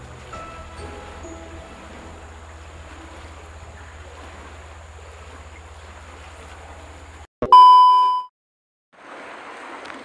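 Faint background music over outdoor noise, cut off suddenly about seven seconds in by a single loud, steady ding lasting under a second. A moment of total silence follows before the outdoor noise returns.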